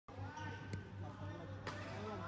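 Two sharp badminton racket hits on a shuttlecock, about a second apart, in a large hall, over voices chattering in the background.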